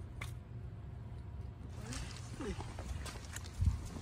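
A steady low hum throughout, with one sharp click just after the start. In the second half come a few faint, short voice-like sliding sounds and a low thump near the end.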